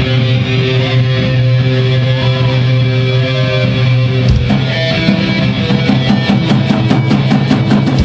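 Live rock band playing: an electric guitar chord rings out held for about four seconds over bass, then the drums come in with strikes that speed up into a build toward a crash.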